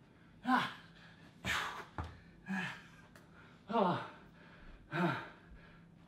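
A man's hard, effortful breaths and short grunts during press-ups and squat thrusts, five in a row, about one a second, each falling in pitch: he is labouring near the end of a high-intensity workout. A brief soft knock about two seconds in.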